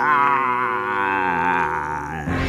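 A man's voice holding one long, wavering cry that slowly falls in pitch, drawing out the end of a villain's laugh, over a steady held musical drone.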